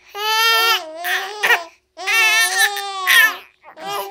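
A baby's voice: two long, high-pitched cries of about a second and a half each, then a short one near the end.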